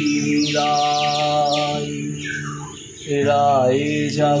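A man singing a long held, wavering line of a Bengali devotional song over acoustic guitar. A bird chirps four or five times in quick falling notes about half a second to two seconds in. The singing dips near three seconds and then returns with a bending note.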